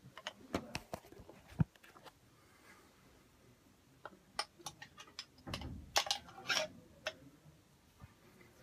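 Scattered small clicks and knocks from handling a glass jar and twisting its lid, with a few short rustling noises near the end.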